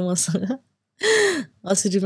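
Conversational speech that breaks off, then about a second in a short, loud, breathy gasp with a falling pitch, before talking resumes.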